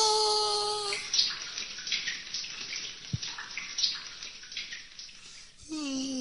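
A held sung note in the performance music ends about a second in, followed by a rushing noise like running water with small crackles. Near the end a voice-like sound begins, sliding steadily down in pitch.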